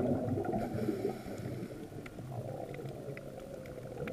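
Muffled underwater noise picked up by a GoPro Hero3 inside its waterproof housing: a low rumble that fades over the first two seconds, with scattered faint clicks.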